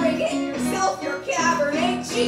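A woman singing a musical-theatre song with keyboard accompaniment on a Roland Juno-DS, the held keyboard notes running under her gliding voice.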